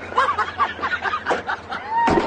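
Men laughing in short, choppy chuckles and snickers.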